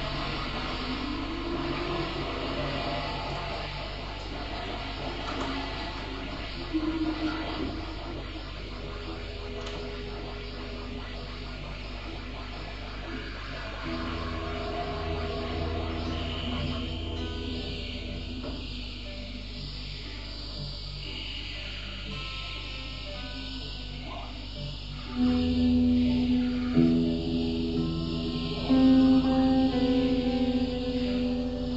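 Electric guitar in improvised ambient music: long held notes and slowly shifting tones, growing louder near the end.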